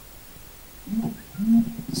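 Low hiss from the sound system. About a second in come two short, low murmured vocal sounds picked up by the microphones, the second one louder.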